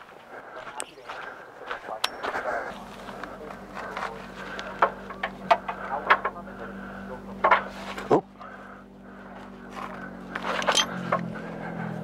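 Metal clicks and clinks of a torque wrench, extension and socket being handled and fitted onto a rear shock bolt in the wheel well, with footsteps at first. A steady low hum begins about three seconds in, and one louder knock comes about eight seconds in.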